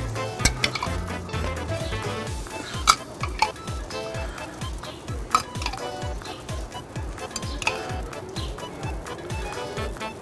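A metal spoon clinking and scraping against a glass jar as tomato sauce is scooped out and spread on a pizza crust, with sharp clinks every second or two. Background music with a steady beat plays under it.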